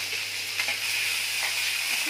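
Freshly added chopped onions sizzling in hot mustard oil in a kadhai, a steady hiss, with a few light knocks of a steel ladle against the pan.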